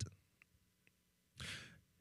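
Near silence in a pause between sentences, broken about one and a half seconds in by a single short breath taken close to a handheld microphone.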